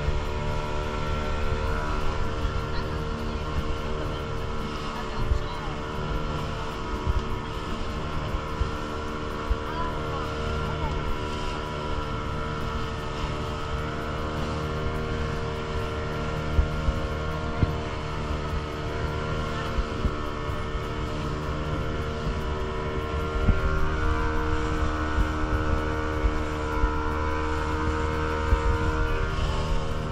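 A small motorboat's engine running steadily under way, with a constant droning hum over the rush of water and wind; it grows a little louder about three-quarters of the way through.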